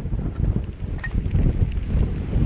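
Gusting wind buffeting the microphone: a low rumble that swells and drops from moment to moment.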